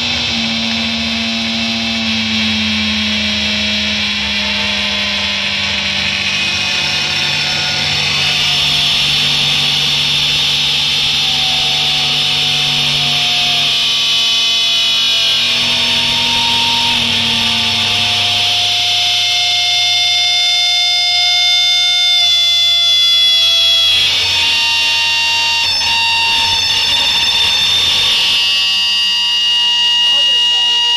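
Live noise rock played loud: a dense wall of distorted noise with sustained droning tones that hold or slowly slide in pitch, without a steady beat. The low drones drop away about two-thirds of the way through, leaving higher whining tones.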